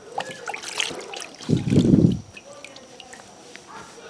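Water in a steel basin as hands wash bitter oranges: dripping and small splashes, with one louder slosh about a second and a half in.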